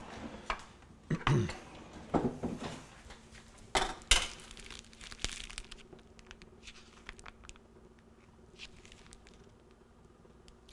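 Butter sizzling with faint scattered crackles around a pancake cooking on a flat-top griddle. Two sharp knocks about four seconds in, and a faint steady hum underneath.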